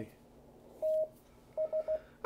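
Morse code (CW) signal heard through an amateur radio receiver on the 20-metre band: a single tone keyed on and off, one long dash about a second in, then a few quick dits near the end, over faint receiver hiss.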